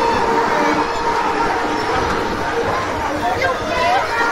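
Funfair ride running: a steady mechanical rumble with a constant hum, and voices calling out over it.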